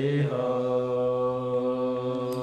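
A man singing a slow, unaccompanied worship chant, holding one long steady note from about a third of a second in.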